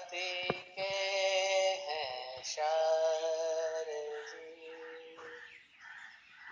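Hindu devotional bhajan to Hanuman: a solo voice holds long, drawn-out sung notes of one to two seconds each, trailing off quieter near the end.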